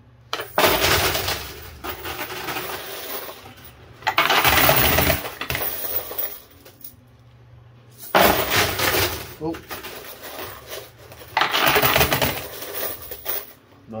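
Quarters clattering in a coin pusher machine in four loud bursts, roughly every four seconds, as coins drop onto the playfield and spill over the shelf edges.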